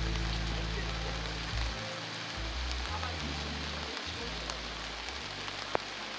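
Heavy rain falling as a steady hiss, with background music of low held notes underneath and a single sharp tick near the end.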